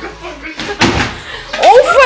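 A dull thump about a second in, then a loud, high-pitched cry near the end.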